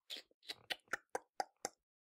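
A faint series of about seven short, soft clicks, irregularly spaced over less than two seconds.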